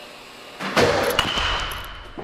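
A 32-inch DeMarini The Goods BBCOR bat hitting a baseball: one sharp crack about three quarters of a second in, followed by a thin high ring that fades out near the end.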